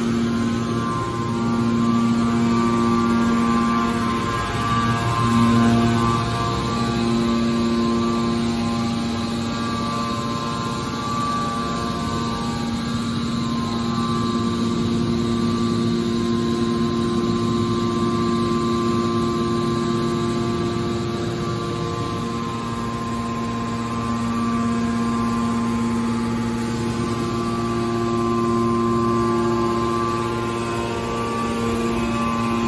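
Hydraulic power unit of a scrap iron baler running: the electric motor and hydraulic pump give a steady hum with a whine of several held tones on top.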